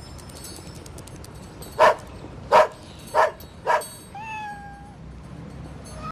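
A cat meowing: four short, loud mews about two-thirds of a second apart, then a quieter, longer cry held at a steady pitch.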